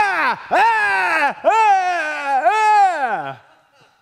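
A man's voice imitating a sound heard in the night: about four long, high-pitched wails or groans, each falling in pitch, dying away shortly before the end.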